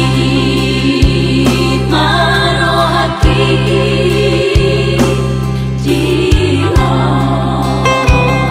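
Batak-language Christian worship song: voices singing over instrumental backing with a sustained deep bass.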